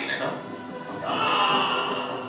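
Film soundtrack played through the room's speakers: voices over music, then a held high-pitched cry lasting about a second, starting near the middle.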